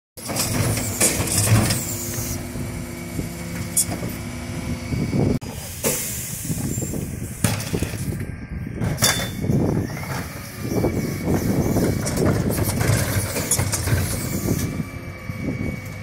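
Dennis Eagle Olympus bin lorry's diesel engine running while its Terberg OmniDEL split bin lifters cycle under hydraulic power: an emptied bin is lowered, then two burgundy wheelie bins are lifted to tip. There are bursts of hissing early on and about six seconds in, and knocks from the bins against the lifter.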